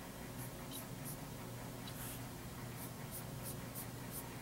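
Fingertip rubbing on pressed powder eyeshadow pans and swiping onto the skin of the back of a hand: several short, soft, faint swishes. A low steady hum runs underneath.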